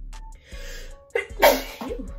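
A woman sneezes once, a sudden sharp burst about one and a half seconds in, over soft background music.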